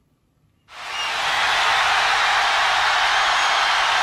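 A huge stadium crowd cheering: a loud, steady roar that starts suddenly about two-thirds of a second in, after near silence.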